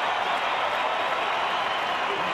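Ballpark crowd applauding, a steady wash of clapping and crowd noise.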